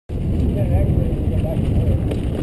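Heavy, steady low rumble of wind buffeting the action camera's microphone and the mountain bike rattling over rocky dirt singletrack on a fast descent, with a faint voice in the background.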